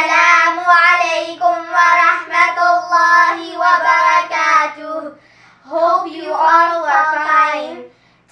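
Two young girls singing together without accompaniment, in held, sustained phrases with a short pause about five seconds in.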